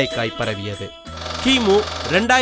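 A voice over music breaks off about a second in, and a low steady rumble with a hissing whoosh takes over: an edited-in sound effect accompanying an animated title graphic.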